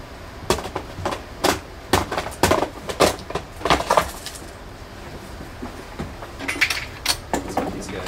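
Lab items knocking and clattering on a bench as clumsy, bulky gloved hands fumble with them: about a dozen sharp knocks in the first four seconds, then a lull, then a few more near the end.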